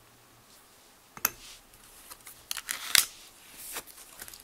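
Handling of nail-stamping tools on a metal stamping plate: a sharp click, then several more clicks and short scrapes, the loudest click about three seconds in.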